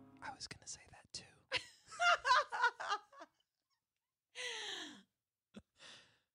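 A faint, unintelligible human voice: about three seconds of soft, broken, whispery speech, then after a pause a short vocal sound sliding down in pitch, and a small click near the end.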